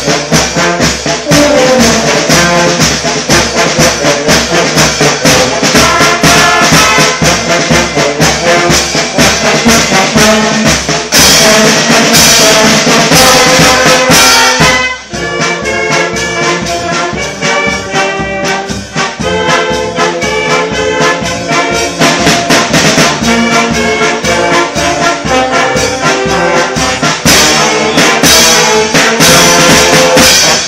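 Brass band with trumpets and trombones playing loud music over a steady percussive beat, with a brief pause between phrases about halfway through.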